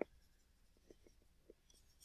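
Near silence: room tone, with a brief click at the very start and two faint ticks about a second and a second and a half in.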